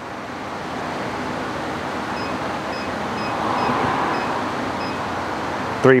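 A steady rushing noise that swells to a peak a little past the middle and eases off again, with a faint high beep repeating about twice a second, six times, through the middle.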